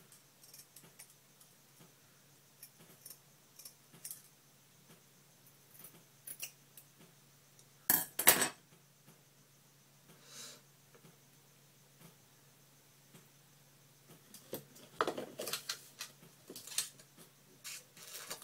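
Scissors snipping through hair ends, soft scattered clicks of the blades closing. Two sharp, louder metallic clicks come about eight seconds in, and a quick run of clicks near the end.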